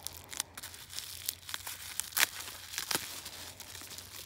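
Plastic bubble wrap being pulled open and torn away by hand, crinkling with irregular sharp crackles, the loudest two a little after two seconds and near three seconds.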